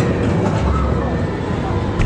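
Ghost-train car rolling along its track: a steady low rumble with clattering from the wheels and a few sharp clicks.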